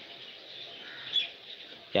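A bird chirping faintly in the background, one short high chirp about a second in, over low room noise.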